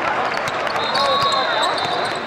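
Basketball dribbled repeatedly on the court floor, with short sneaker squeaks and background voices from the gym.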